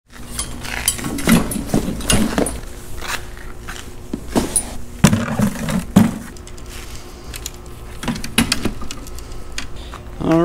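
Fishing gear being handled: a plastic bucket with a wire handle and tools inside rattles and knocks against a loaded metal beach cart, with a run of sharp clicks and clanks.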